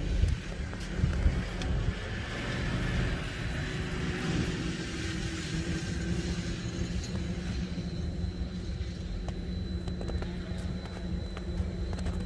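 Snowmobile engine running across a snowfield, its hiss swelling for a few seconds and easing off, over a steady low hum.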